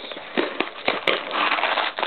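Foil trading-card packs crinkling and rustling as they are pulled from a cardboard hobby box, with a few sharp crackles in the first second and a denser crinkling in the second half.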